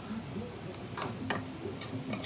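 A few light clicks and knocks, about four in the middle of two seconds, from kitchen utensils being handled at the hob.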